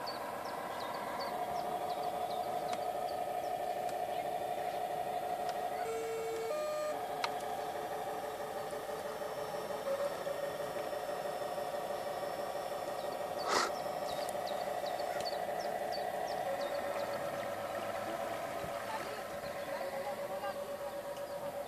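Radio-controlled model fireboat running on the water: a steady, slightly warbling whine. A brief run of short stepped tones comes about six seconds in, and a single sharp swish about halfway through.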